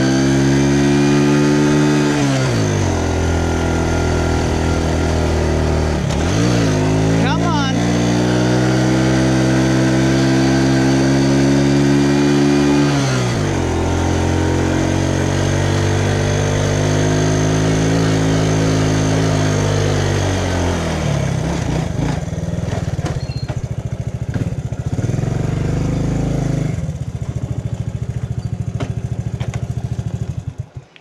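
Small step-through motorbike's single-cylinder engine pulling uphill, its revs dropping sharply several times. From about two-thirds of the way in it settles to a slower, lower beat as the bike slows down.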